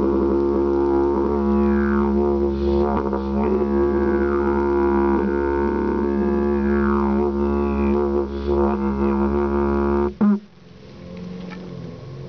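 A 122 cm didgeridoo in the key of D# playing a steady low drone, its overtones sweeping up and down as the mouth shape changes. About ten seconds in the drone stops with a short loud blast, and a much quieter low hum remains.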